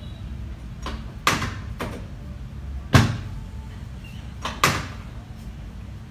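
Three sharp thumps about a second and a half apart, each with a faint click just before it, as hands thrust down on a patient's lower back on a padded treatment table during spinal manipulation; the middle one is the loudest.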